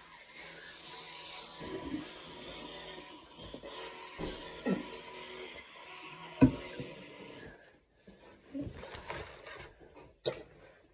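Teeth being scrubbed with a manual toothbrush, a steady scrubbing hiss with a few short muffled mouth sounds, stopping about three-quarters of the way through. A sharp knock about six and a half seconds in.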